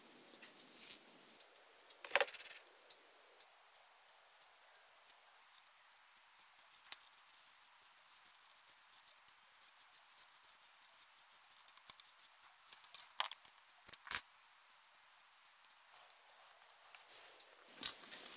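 Faint handling sounds of green floral tape being stretched and wound around a bamboo skewer stem: soft rustling with scattered small clicks and ticks, a few louder ones about two seconds in and again around thirteen to fourteen seconds.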